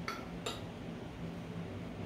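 A metal fork clinks twice against a dinner plate, about half a second apart, over a low steady hum.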